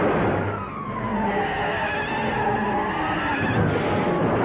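A car speeding along with a high squeal that slides down in pitch and then back up, over steady engine and road noise.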